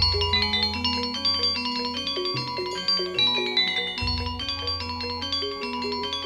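Instrumental accompaniment music with no singing: a melody of ringing pitched notes over deep bass notes, the bass shifting at the start and again about four seconds in.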